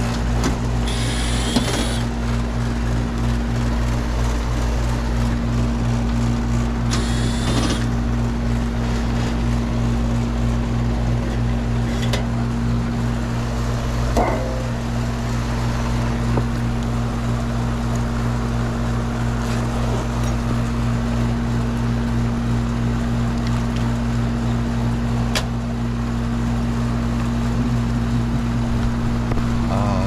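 Steady low electrical hum, with two short runs of a cordless screwdriver about a second in and about seven seconds in as the condenser's service panel screws come out, and a few light metal knocks and ticks later on.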